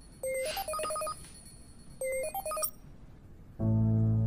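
Mobile phone ringtone: a short electronic melody of a few quick notes, played twice, signalling an incoming call. Near the end, background music with held chords comes in.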